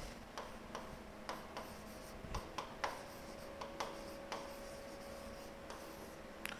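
Hand-writing on a lecture board: faint, irregular taps and short scrapes as a word is written out letter by letter.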